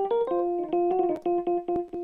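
Casio Privia Pro PX-5S playing a reed electric piano tone: a run of short, separate notes, with thin clicks among them from the tone's key-off noise layer.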